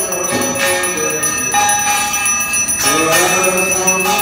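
A bell ringing continuously through the aarti, over devotional singing and music.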